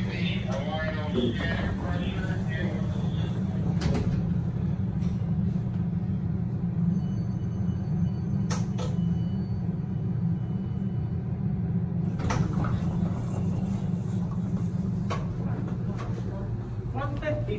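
Elevator car travelling between floors, with a steady low hum and a few sharp clicks along the way. A faint high tone sounds for a few seconds in the middle.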